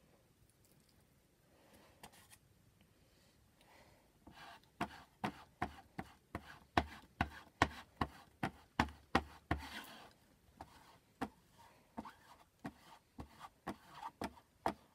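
Handled squeegee scraping chalk paste across a mesh silkscreen stencil in short, sharp strokes, about two to three a second, starting about four seconds in.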